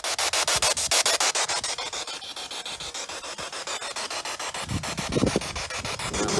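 Spirit box sweeping through radio frequencies: loud static hiss chopped into rapid, even pulses about ten times a second, with brief fragments of sound breaking through near the end.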